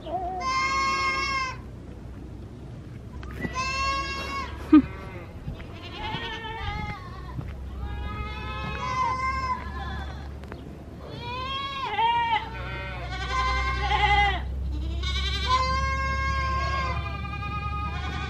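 Several goats bleating again and again, long wavering calls, some overlapping, every second or two, over a low steady rumble. A short sharp knock sounds about five seconds in.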